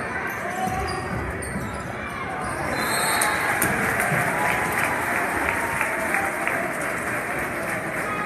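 Basketball game noise in a large gym: a basketball bouncing on the hardwood under the chatter of the crowd. The noise swells a little about three seconds in.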